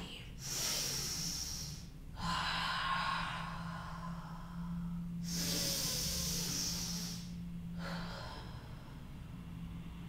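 A woman's slow, deep breaths, about four long breaths in and out, each a soft rushing hiss of air lasting two to three seconds. A faint steady low hum runs underneath.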